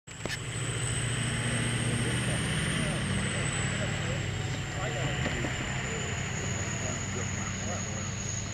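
A steady low mechanical hum with a thin high whine over it, a sharp knock right at the start as the camera is handled, and faint distant voices.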